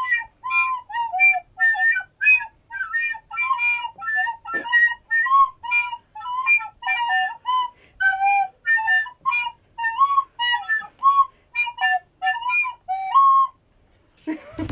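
A plastic recorder playing a simple tune in short, separate notes, about three a second, stopping shortly before the end.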